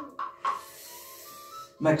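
Jaw harp (doromb) played in short even strokes, about four a second, over its steady low drone. About half a second in, this gives way to a soft breathy hiss.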